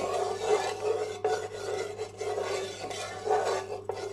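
Wooden spatula stirring and scraping around the bottom of a kadhai as a block of desi ghee melts in it: a continuous rasping rub that swells and dips with each stroke.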